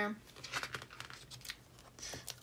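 Quiet crinkling and light ticks of a paper sticker being handled and pressed onto a planner page by fingertips.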